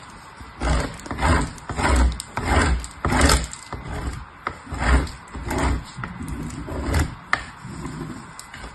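A bar of soap being grated on a metal box grater: repeated scraping strokes, nearly two a second.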